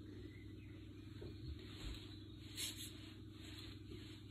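Quiet room tone: a steady low hum with a few faint, brief noises.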